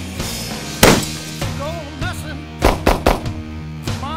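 Rock background music with gunshots cutting through it: one loud shot about a second in, then three quick shots in a row shortly before the end.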